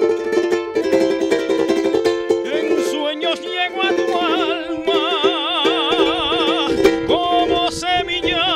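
A timple, the small Canarian guitar, strummed in a quick folk rhythm. About three seconds in, a man's voice joins, singing long held notes with a wide vibrato.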